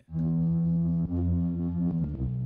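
Native Instruments Low End Modular software synth playing a sustained low bass note, re-struck about a second in.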